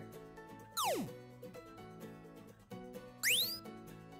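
Two short synthesized square-wave laser sound effects from the micro:bit sound editor. About a second in, a tone sweeps quickly down in pitch. A little past three seconds in, a tone sweeps quickly up. Soft background music plays under both.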